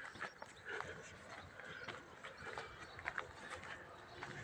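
Slow freight train of empty timber stake wagons rolling in, heard faintly: irregular knocks and clicks from the wheels over rail joints and points, over a low rumble.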